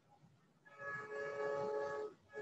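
A steady horn-like sound of two pitched notes together starts about two-thirds of a second in and holds for over a second.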